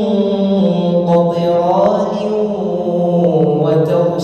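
A man's voice reciting the Quran in a melodic, drawn-out chant, holding long notes that slide slowly up and down in pitch.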